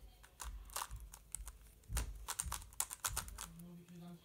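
Plastic twisty puzzle being turned fast by hand: rapid, irregular clicking and clacking of its layers. A brief low voice sound comes in near the end.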